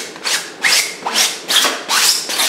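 Palette knife spreading thick oil paint across a canvas: a quick series of short scraping strokes, about five in two seconds.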